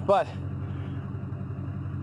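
An engine idling with a steady, low, even hum.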